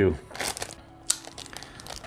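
Thin clear plastic bag crinkling in a few brief, faint rustles as it is handled and pulled open.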